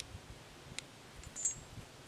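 Metal chain grown into an oak trunk clinking faintly as it is handled: a light click, then a brief high metallic ring about one and a half seconds in.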